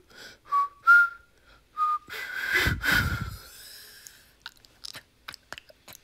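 A person whistling a few short notes, the second one rising, followed about two seconds in by a louder breathy burst lasting about a second, then only faint clicks and rustles.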